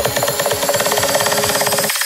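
Electronic dance music build-up in a Coronita-style club mix: a rapid, evenly repeating stab roll under a rising high sweep, cutting out near the end just before the drop.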